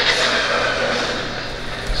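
Sound design playing under a hyperlapse edit: a whoosh swelling at the start for a transition, then a steady wash of city ambience with traffic.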